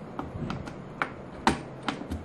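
Round metal multi-pin probe connector clicking against the panel socket as it is turned to line up its keyway: a series of sharp clicks, the loudest about a second and a second and a half in.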